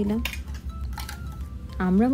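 A few light clinks of metal kitchenware, a steel saucepan and utensils, with faint ringing after them.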